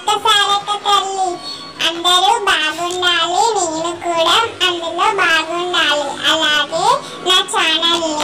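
A song with a high-pitched, child-like voice singing a wavering, ornamented melody over a steady beat of percussion strokes.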